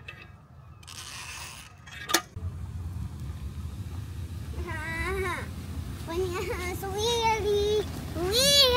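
Hot tub jets switched on: a sharp click about two seconds in, then a steady low rumble of churning, bubbling water. From about halfway a child's high, drawn-out excited voice sounds over it.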